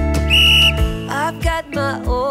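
A short, high, steady whistle-like signal tone about half a second long, marking the switch from the countdown to a new exercise interval, over a pop song with a steady beat. A singing voice comes in about a second in.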